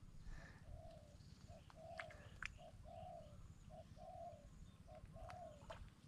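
A bird calling faintly in the background: a short note followed by a longer one, repeated about every second, with a few faint clicks in between.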